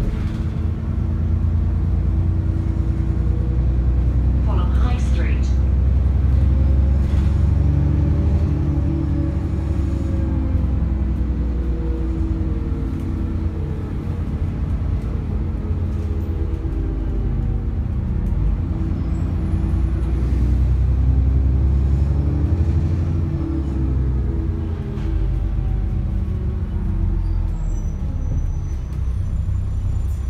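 ADL Enviro400 double-decker bus heard from inside the saloon while under way: a deep, steady drone from the diesel engine and drivetrain, its note rising and falling as the bus pulls and slows.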